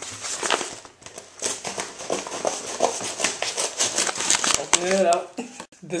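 Packaging crinkling and rustling in quick, irregular crackles as a package is opened by hand.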